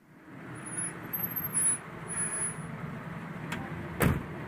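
A pickup truck's engine running as it pulls in and stops, with brief high brake squeals. Near the end a click, then a sharp knock as its door swings open against the neighbouring car.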